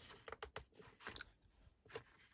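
Near silence with a few faint crinkles and clicks from a paper instruction sheet being handled: a cluster about half a second in, another just past one second, and one more at the end.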